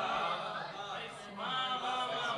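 Several listeners' voices calling out praise together, overlapping, in response to a recited couplet, the usual spoken applause of a mushaira.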